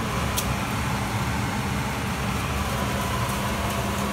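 Steady hum of a running fan with a low, even drone and a couple of faint clicks.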